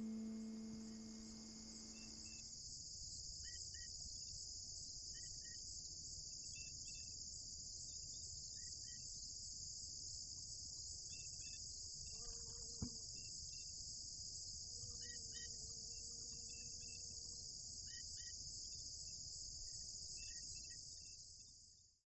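The last notes of the song die away in the first couple of seconds. Then a steady chorus of crickets runs on with scattered short chirps, and a single faint knock comes about halfway through. It all fades out at the very end.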